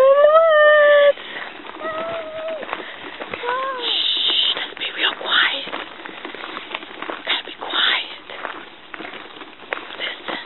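A person's voice holds a long wavering note for about a second, followed by two short vocal sounds; then, from about four seconds in, irregular crunching steps on a gravel dirt road.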